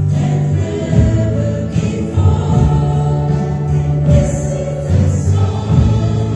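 Live worship song: voices singing a gospel melody over guitar and a sustained bass line.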